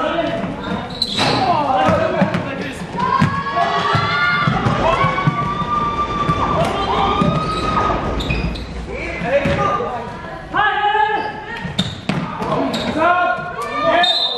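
Basketball bouncing on the court floor during live play, with players and onlookers shouting and calling out. The hall's echo is audible, and one long drawn-out call comes a few seconds in.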